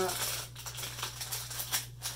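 A toy car's plastic blister pack and card backing being torn open by hand: a run of irregular crackles and clicks.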